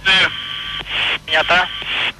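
Voice radio transmission: a man's speech comes in short bursts over a band of radio hiss, and the hiss cuts off suddenly at the end as the channel closes.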